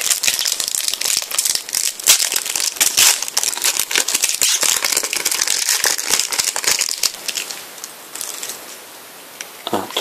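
A foil trading-card sachet is crinkled and torn open by hand, and the cards are slid out. The dense crackling of the thin foil dies down after about seven seconds.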